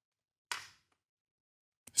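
Mostly quiet room with one short hiss-like noise about half a second in, then a man starts talking near the end.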